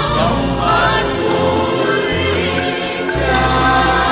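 Choir singing a hymn with vibrato over held low bass notes that change every second or so.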